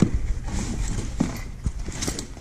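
Leather motorcycle clothing being handled and pulled out of a cardboard box: a low rustle with a few scattered knocks and thuds.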